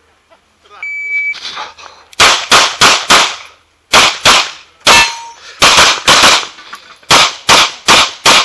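A shot timer's single steady electronic beep about a second in, then rapid pistol fire: some fifteen shots in quick pairs and short strings, with a short pause about three seconds in.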